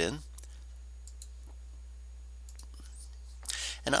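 A few faint, scattered computer mouse clicks, made while a new folder is created through a right-click menu.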